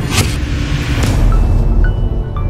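Channel intro music: a deep low rumble building in loudness, with two whooshes, about a quarter second in and about a second in.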